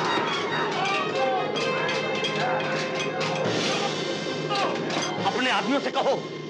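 Film fight-scene soundtrack: men shouting and yelling over background music, with many sharp clanks and crashes of blows and blades.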